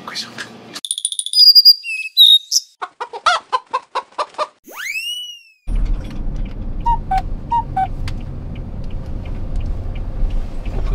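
Sound effect of whistled chirps, then a quick run of clucks and a rising-then-falling crow like a rooster's, clean with no background behind it. About six seconds in it gives way to the steady low rumble of a car cabin on the road.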